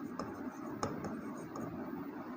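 Chalk writing on a board, a soft scratching with a few sharp taps as the letters are formed.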